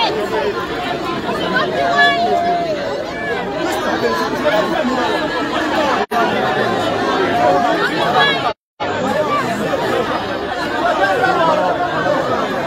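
A crowd of people talking over one another outdoors, many voices at once with no single clear speaker. The sound cuts out briefly about six seconds in and again for a moment just before nine seconds.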